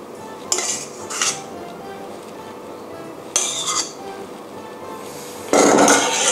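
A metal spoon scraping and clinking against a stainless steel mixing bowl and a ceramic plate as salad is spooned out: four short scrapes, the last near the end the loudest and longest. Soft background music plays underneath.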